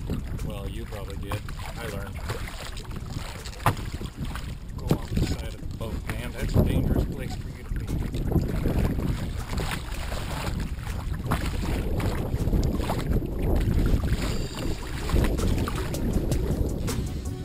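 Wind buffeting the microphone and small waves slapping against a kayak's hull at sea, with a few sharp knocks.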